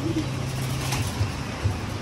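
Racing pigeons cooing in the loft over the steady hiss of heavy rain.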